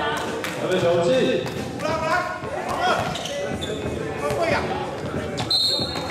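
A basketball bouncing on the gym floor at irregular intervals, with voices of players and onlookers calling out and echoing in a large hall.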